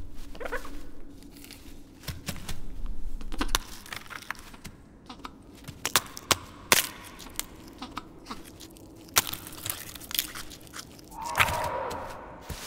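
Film creature sound design for a feathered dinosaur at its cave nest: a string of sharp clicks, crunches and scrapes as it moves over the eggs, over a low steady hum, with a short falling call near the end.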